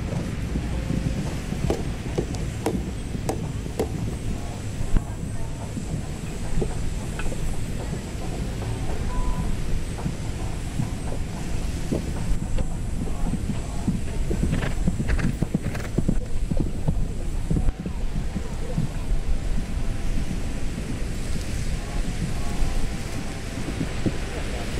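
Wind rumbling on the microphone, with scattered irregular knocks and faint distant voices and music.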